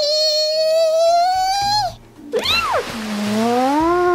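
A woman's voice giving a long, slowly rising drawn-out cry as a toy doll jumps, then a quick swooping whoop over a hissing noise, then a lower sliding voiced "ooh".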